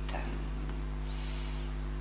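Steady low electrical hum, with a faint, brief high-pitched sound a little past a second in.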